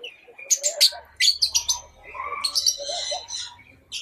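Small parrots (lovebirds) chirping: a string of short, high chirps and clicks with brief gaps between them.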